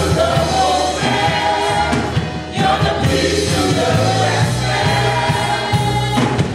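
Live gospel worship song: a woman sings lead into a microphone over continuous band accompaniment, with other voices joining in.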